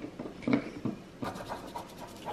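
Paintbrush scratching on paper as paint is brushed on, a run of short quick scrapes in the second half.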